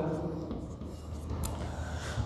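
A faint, low, steady rumble of background noise, with one faint short click about one and a half seconds in.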